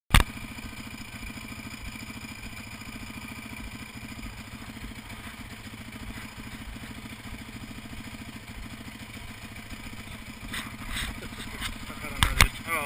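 Off-road motorcycle engine idling steadily with an even pulse. A single sharp knock at the very start is the loudest sound, and a few clattering knocks come near the end.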